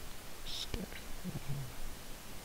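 A person's voice briefly mutters or whispers a few indistinct sounds under the breath, with a single click about three quarters of a second in, over a steady background hiss.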